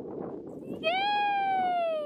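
A baby's long squeal starting about a second in, rising briefly and then sliding slowly down in pitch.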